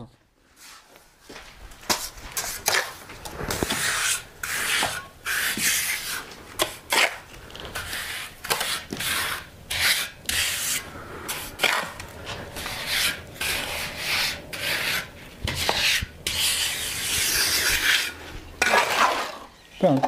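Repeated scraping and rasping strokes of a mason's trowel and straightedge over fresh render mortar on a wall, as gaps are filled with mortar and the render is screeded flat. The strokes start about two seconds in.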